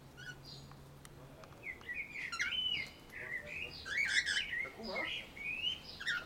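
Cockatiels chirping and warbling: a run of quick rising and falling whistled notes that starts about a second and a half in and continues, louder in places, to the end.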